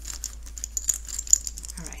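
Small plastic counter discs clicking against each other as they are picked up and handled, a quick, uneven run of light clicks.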